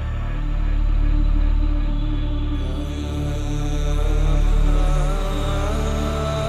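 Progressive house DJ mix in a breakdown: deep sustained bass that swells and fades slowly under held synth pads, with no clear kick drum. A wavering melodic line comes in near the end.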